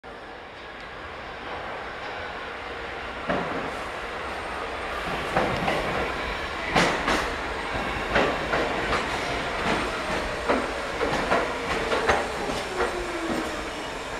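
R46 subway train pulling into the station: a rumble that builds as it nears, with irregular clacks of wheels over rail joints. A motor whine falls steadily in pitch through the second half as the train slows.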